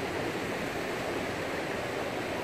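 Ocean surf breaking on the beach, a steady even wash of noise.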